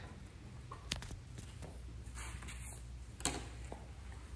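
Quiet workshop room tone with a low steady hum, broken by a sharp click about a second in and a louder click or knock a little past three seconds, plus faint handling rustles.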